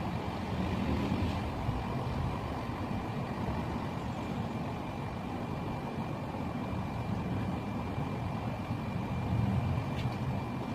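Steady background rumble with a faint, thin high-pitched tone held throughout.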